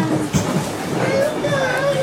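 Young children's high voices chattering and calling out, with a brief knock about a third of a second in.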